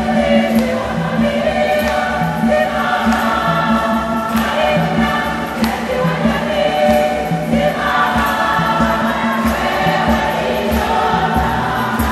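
Women's choir singing a Swahili church hymn together, accompanied by an electronic organ with a moving bass line and a steady beat.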